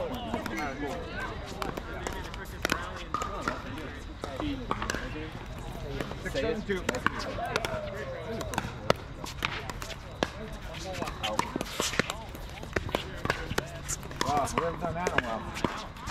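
Scattered sharp pops of pickleball paddles striking hard plastic balls, with balls bouncing on the hard court, over background chatter of voices.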